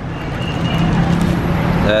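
A steady low rumble under an even wash of background noise, with no sudden events.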